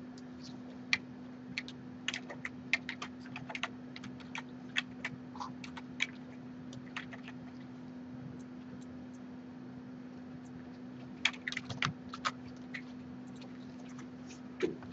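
Computer keyboard being typed on in short, irregular runs of keystrokes, with a quicker cluster of key clicks near the end, over a steady low hum.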